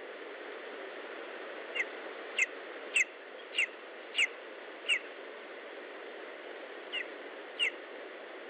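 Lesser spotted eagle chick calling: short, sharp notes that fall in pitch, six in a quick run about two a second, then two more near the end, over a steady background hiss.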